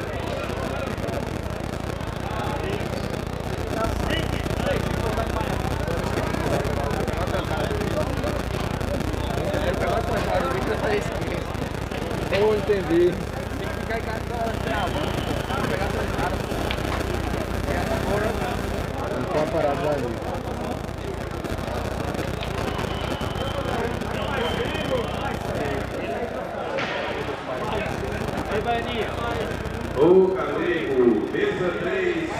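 Steady chatter of a crowd of spectators, many voices talking at once without any single clear speaker.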